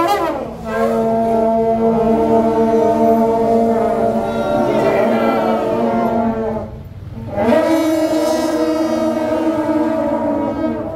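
A troupe of shaojiao, the long brass horns of Taiwanese temple processions, blowing long held blasts together in a low, steady drone. The sound dips away about seven seconds in and a fresh blast starts half a second later.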